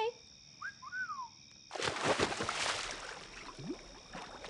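A person jumping into a swimming pool: a sudden splash about two seconds in, followed by a second or so of water washing and settling.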